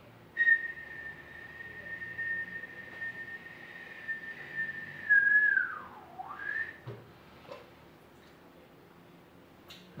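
A person whistling one long steady high note as a flying-saucer sound. Near the end the note swoops down and back up, then stops about two-thirds of the way in.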